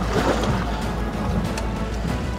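Background music over a steady wash of wind, sea and boat noise with a low rumble.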